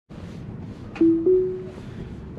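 Two-note rising chime from a Tesla's cabin speakers, about a second in, fading within a second. It is the chime Autopilot plays as Full Self-Driving engages. Steady road noise inside the cabin lies under it.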